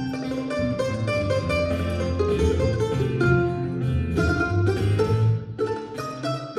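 Acoustic blues trio playing a slow blues instrumental passage: acoustic guitar and mandolin picking melodic lines over a plucked bass line.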